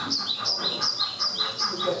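Passing model freight train: a regular quick ticking with repeated high, falling squeaks in two alternating pitches, a few a second.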